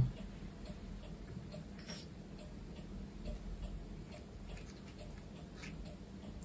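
Faint ticking and a few light clicks in a quiet room, with one slightly stronger click about two seconds in.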